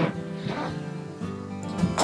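Background acoustic guitar music: a chord plucked at the start and another near the end, with notes ringing in between.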